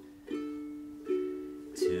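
Ukulele strummed three times, each chord left to ring and fade, with singing coming in at the very end.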